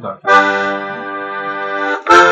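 Bayan (chromatic button accordion) sounding one sustained chord, starting about a third of a second in and held steady for about a second and a half, a chord of a blues progression in C major.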